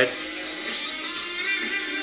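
Guitar music: held electric-guitar notes ringing steadily.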